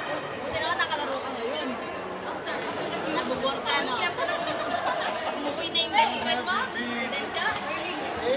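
Overlapping chatter of many voices echoing in a large sports hall, with a few sharp clicks; the loudest comes about six seconds in.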